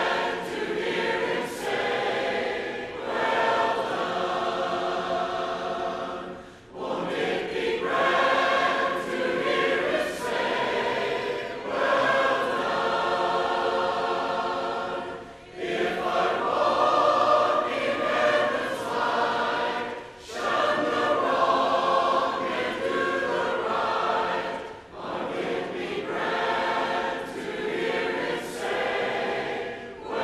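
A church congregation singing a hymn a cappella, in long phrases with brief pauses between lines.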